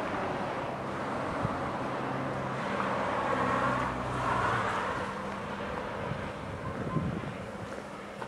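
Road traffic going by beside the station: a steady engine hum with the noise of a passing vehicle swelling about three to four seconds in and fading after, with some wind on the microphone.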